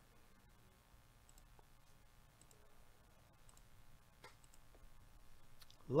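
Computer mouse clicking: about six faint single clicks spaced through a few seconds.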